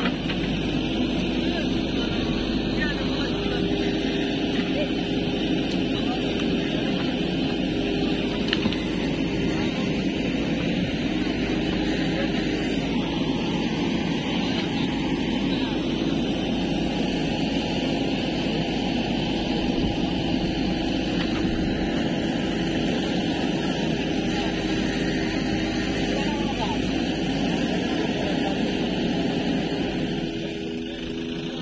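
JCB 3DX backhoe loader's diesel engine running steadily under load while the backhoe arm works.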